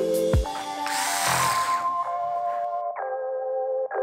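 Background music with held keyboard-like chords. About a second in, a small electric screwdriver whirs for a second or two as it drives in a tiny laptop screw.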